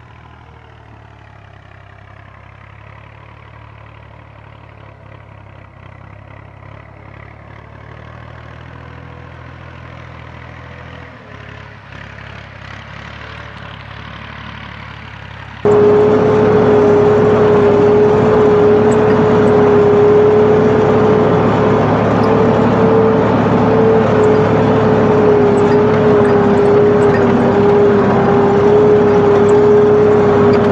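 A farm tractor's engine running, faint at first and growing gradually louder as it approaches. About halfway through, it becomes much louder and close: a steady engine drone with a constant hum as the tractor pulls a tine cultivator through the soil to cover broadcast wheat seed.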